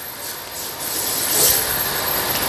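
Belt-driven electric RC drift car running across a hard floor: a high motor whine over a whirring hiss of the drivetrain and tyres, growing louder toward the middle.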